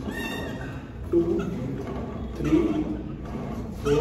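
A man's short strained grunts, one about every second and a half, as he works through a set of bicep reps. A brief high-pitched sound comes right at the start.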